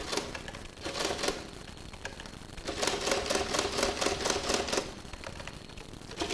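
Rapid clicking of keys on a desktop printing calculator: a short cluster about a second in, then a longer fast run about three seconds in.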